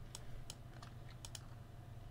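Faint computer keyboard clicks: a handful of separate, irregular keystrokes.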